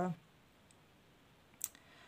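Mostly near silence, broken about one and a half seconds in by a short cluster of quick, sharp clicks.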